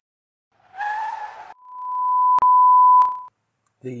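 A single pure, high electronic beep that swells over about a second, holds steady with two sharp clicks in it, and cuts off suddenly after about two seconds. Just before it comes a brief hissy sound with a faint wavering whistle.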